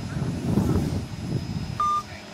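Mobile phone held out on speaker giving one short, steady electronic beep near the end: the tone of the call being cut off. Low rumbling background noise runs beneath it.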